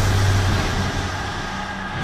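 Trailer sound design: a low rumble with a steady hum under a wash of noise, slowly fading, with a fresh swell right at the end.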